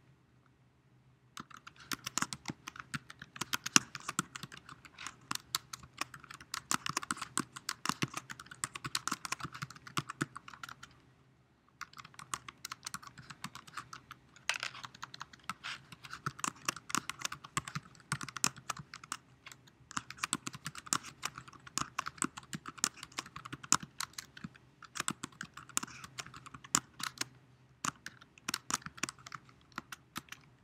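Typing on a computer keyboard: quick, dense runs of key clicks that stop for about a second roughly a third of the way in, then carry on with short pauses, over a faint steady hum.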